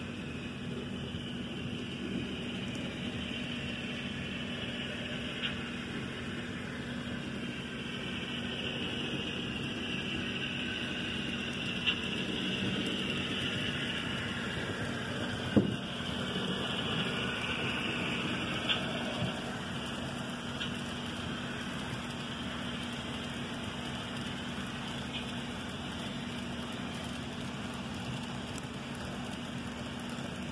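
Model railroad layout with a steady room hum, and a faint rolling rush that swells and fades over the middle stretch as a model Amtrak passenger train runs past on the track. A few sharp clicks stand out during the swell.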